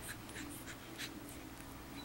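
Pekingese puppies scuffling on carpet: faint scratching with a few light ticks, mostly in the first second, over a faint steady hum.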